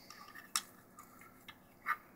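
A few faint, sharp clicks and taps as a 1/6-scale plastic toy SCAR rifle is handled and turned over in the fingers.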